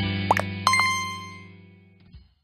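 The end of a short promotional jingle: a quick rising pop sound effect, then two rapid chime notes over a held low chord that fades away.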